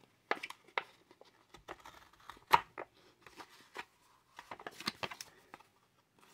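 Plastic blister pack of trading cards being pried and slit open with a small metal tool: scattered clicks, crinkles and short scrapes of the plastic, the sharpest about two and a half seconds in.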